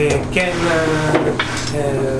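A man talking over the steady hum of an electric motor on a briar pipe-shaping lathe.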